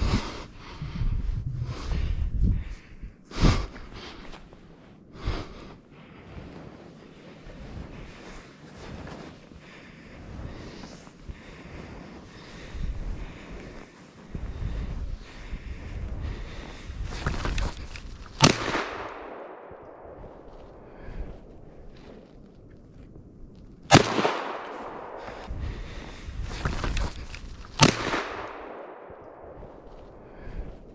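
Three sharp shotgun reports, about 18, 24 and 28 seconds in, each trailing off in a long echo through the woods. They are shots at a fleeing white hare.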